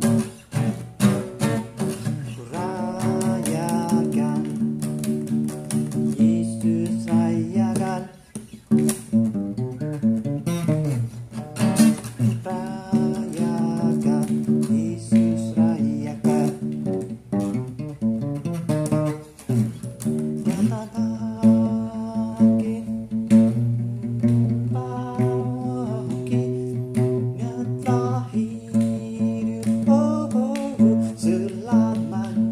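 Cutaway acoustic guitar strummed in chords, with brief breaks in the playing about eight seconds in and again near twenty seconds.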